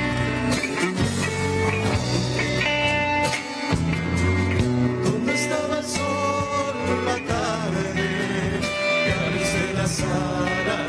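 Live Argentine folk band playing on stage: acoustic guitars and electric guitar over a drum kit, a continuous full-band passage.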